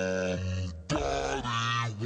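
A man's voice making two drawn-out low vocal sounds, each just under a second long, with a brief break between them; the second is slightly higher.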